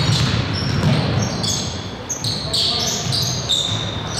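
Basketball game sounds in a large gymnasium: sneakers squeaking in short, repeated high chirps on the hardwood floor as players cut and stop, with a basketball bouncing.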